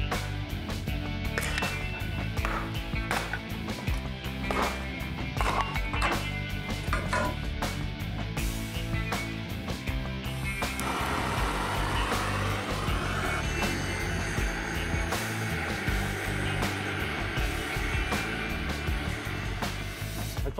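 Background music over a run of sharp, irregular knocks from an axe chopping firewood in the first half. About eleven seconds in, a steady rushing noise takes over.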